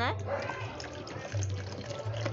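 Distilled water poured in a thin, steady stream from a plastic jug into a plastic measuring cup, splashing lightly as the cup fills.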